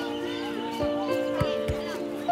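Film soundtrack of an animated short: background music with long held notes under children's voices playing, with a few scattered light knocks.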